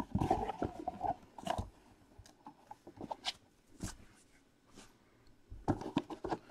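Handling noise from a cardboard trading-card box: the sleeve slides off and the lid lifts, giving faint scrapes, taps and rustles in short spurts.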